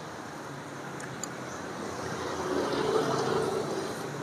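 Road traffic: a passing vehicle's engine grows louder to a peak about three seconds in, then fades, over a steady background hum.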